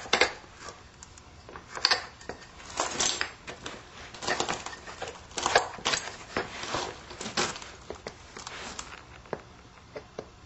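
A billet scraping and rubbing along the edge of a Burlington chert preform, crushing small bits off to turn the edge down: platform preparation before a flake is struck. It comes as irregular gritty scrapes and clicks, one or two a second.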